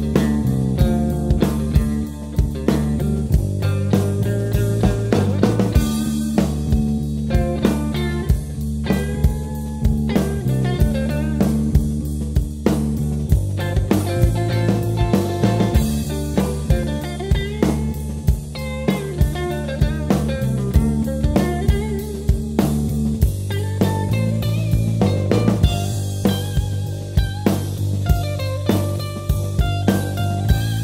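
A rock band playing live: electric guitar over drum kit and electric bass, with a steady beat and no singing.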